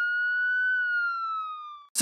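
A single siren wail used as a sound effect, already at its high pitch, sagging slowly lower and then cut off abruptly near the end.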